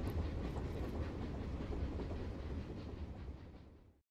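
Passenger train carriage running on the rails, heard from inside the car: a steady low rumble with faint clattering. It fades out near the end.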